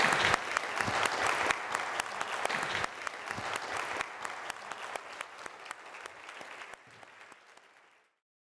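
Audience applauding, loud at first, then dying away gradually until only a few scattered claps are left near the end.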